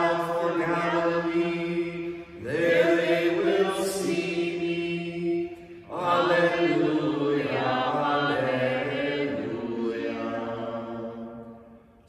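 A priest chanting a prayer of the Divine Office: a solo male voice singing in three long phrases, with short breaks between them, the last trailing off near the end.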